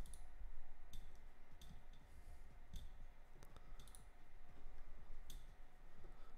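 Computer mouse clicks, about six of them at irregular intervals, over a steady low background hum.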